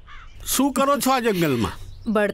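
A crow cawing faintly in the background, with a man's voice loudest from about half a second in: a drawn-out vocal sound that falls steadily in pitch.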